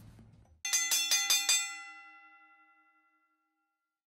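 Background music fading out, then a quick run of about seven bright bell-like chime strikes in under a second, ringing on and fading away to silence: an edited-in chime sound effect.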